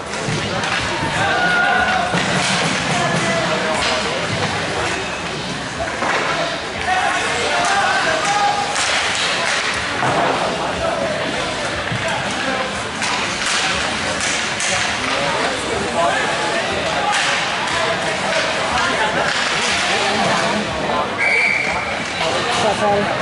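Ice hockey play in an arena: repeated sharp clacks and thuds of sticks, puck and bodies against the boards, under indistinct spectator talk. A short, steady high whistle sounds just before the end as play stops at the net.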